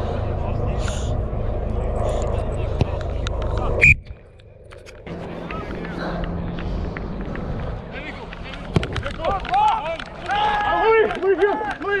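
Wind rumbling on the microphone of a referee's head-mounted camera at a rugby match, cut off by a sharp knock about four seconds in. Near the end, players are shouting and calling across the pitch.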